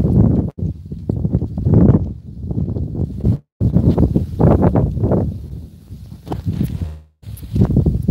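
Handling noise from a phone's microphone: fingers rubbing and bumping the phone, loud and low. The sound cuts out completely twice, briefly, about three and a half seconds in and again near seven seconds.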